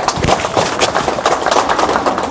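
Several people clapping their hands, a quick, irregular patter of claps.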